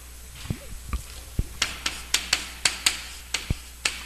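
Chalk tapping on a blackboard while writing, a quick run of about nine sharp taps, roughly four a second, in the second half. A few dull low thumps come before it.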